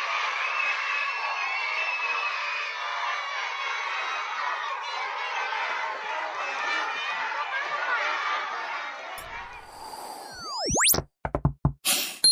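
A crowd of children chattering and calling out, many voices at once, for about nine seconds. Then a short logo sound effect comes in: a whoosh with sweeping pitch glides, followed by a quick run of sharp hits near the end.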